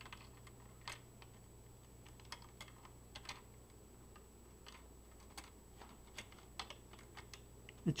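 Faint, scattered light clicks and taps of plastic parts as the trigger and its spring are fitted back into the open plastic shell of a Buzz Bee Air Warriors toy shotgun.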